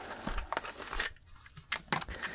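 Paper packaging crinkling as it is handled, with a few light clicks. It dies away after about a second, and one more click comes near the end.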